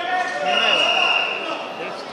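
Voices shouting across a large sports hall, one of them holding a long high-pitched call from about half a second in.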